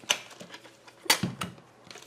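A few sharp plastic clicks and knocks as a handheld digital multimeter in a rubberised case is turned over and set down on a hard surface. The loudest knock comes about a second in.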